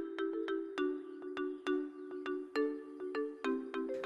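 Brief music interlude: a quick, even run of light struck notes, about four a second, over a held low chord.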